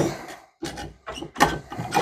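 A cocktail being poured into a martini glass, with bottles and glassware clinking and knocking on a wooden bar top. The sharpest knocks come at the very start and about one and a half seconds in.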